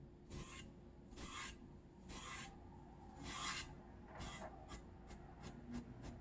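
Faint paintbrush strokes on a wooden birdhouse: the bristles scrub across the wood about once a second, five strokes, then a few quicker, lighter dabs near the end.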